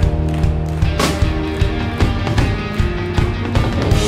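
Live rock band playing a song: distorted electric guitars, bass and drum kit, with a loud hit across the whole range about a second in.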